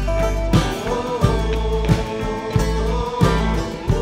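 Country-rock band music in an instrumental stretch: guitar over bass and a steady drum beat, with a held, slightly bending melody line on top.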